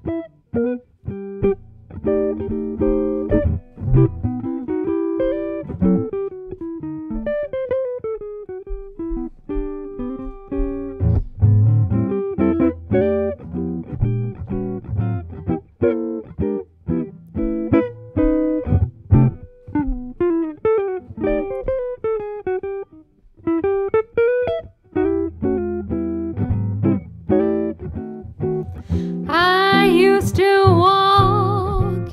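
Jazz guitar solo on an archtop guitar: running single-note lines mixed with chords, with a few short pauses. Near the end a woman's singing voice comes back in.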